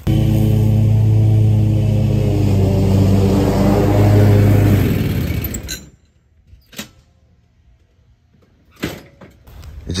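Zero-turn riding mower engine running steadily with an even hum, fading out about five seconds in.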